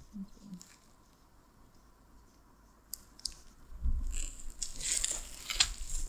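Plastic packaging crinkling and crackling close to a phone microphone as it is handled and pulled open by hand, starting about halfway through, with bumps of handling on the phone.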